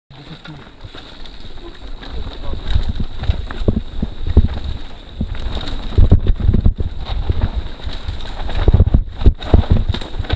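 Mountain bike ride down a rough dirt trail: wind buffets the camera microphone, with repeated knocks and rattles of the bike over roots and ruts, growing louder over the first few seconds as speed builds.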